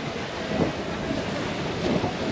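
Wind buffeting a GoPro's microphone: a steady rush with an uneven low rumble underneath.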